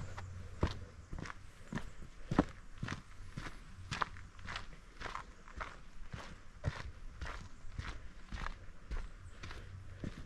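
Footsteps of a hiker walking steadily on a dirt and rock forest trail, about two steps a second.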